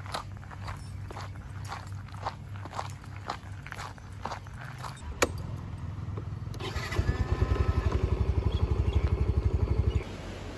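Footsteps on a dirt road, then a sharp click as a motor scooter's ignition key is turned about five seconds in. From about seven seconds the scooter's small engine is running with a fast, even low pulse.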